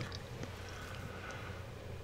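Quiet, steady low hum with a faint even hiss, with no distinct events.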